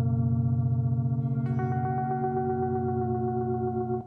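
Electric guitar played through effects, holding sustained droning notes with a fast, even pulse in the low end. A new note is picked about a second and a half in and rings on.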